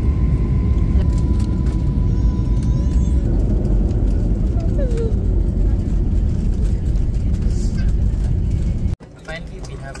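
Loud, steady low rumble of a jet airliner's cabin noise as the plane lands and rolls along the runway, with a thin steady tone in the first few seconds. It cuts off about nine seconds in to a much quieter cabin.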